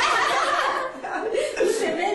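A woman and a man laughing together.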